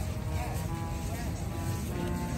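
People's voices talking close by over a steady low rumble, with music faintly in the background.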